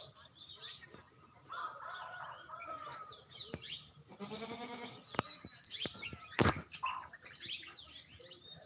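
A goat bleating a few times, mixed with handling knocks and a sharp thump about six and a half seconds in.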